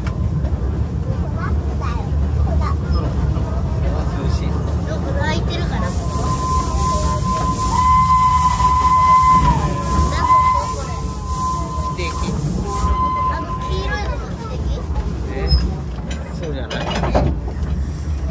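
A small narrow-gauge steam locomotive and its carriages running, heard from the carriage just behind the engine: a steady low rumble of wheels and running gear. A long, high-pitched steady tone with a hiss sounds through the middle, strongest around halfway.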